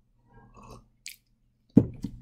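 A person sipping and swallowing a hot drink from a ceramic mug, faint and close to the microphone, then a single thump near the end as the mug is set down on the desk.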